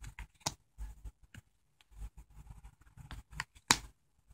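Tarot cards being flipped over one by one onto a pile: short papery slides and light slaps of card on card, with a sharp snap near the end as the loudest sound.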